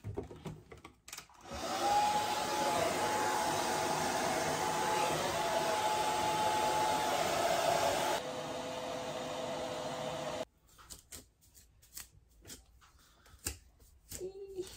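Hand-held hair dryer blowing, with a faint steady whine over the rush of air. It starts about a second and a half in, drops to a quieter setting about eight seconds in, and switches off two or three seconds later.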